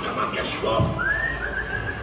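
A single human whistle, like someone calling a dog, starts about a second in. It slides up and is then held for about a second, over the murmur of the ride's soundtrack voices.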